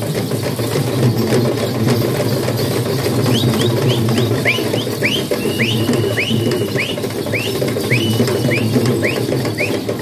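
Loud, dense rhythmic clatter of perahera procession drumming. From about three seconds in until near the end, a high whistle sounds in quick repeated chirps, about two a second, with one longer held note in the middle.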